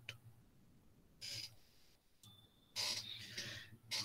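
Two faint, short hissy breaths over quiet room tone, one about a second in and a longer one near three seconds in.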